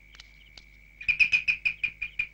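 Night-time ambience: a steady high-pitched drone, like a cricket, with a quick run of short high chirps, about six or seven a second, starting about a second in.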